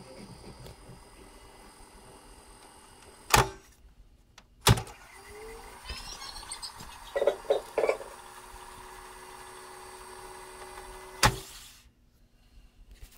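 Tandberg Model 11 reel-to-reel tape recorder: a sharp click of its transport control about three seconds in and another a second later, then the reels spooling at fast-wind speed with a steady whine that rises as it gets up to speed. A few knocks come midway, and a final click stops the transport near the end.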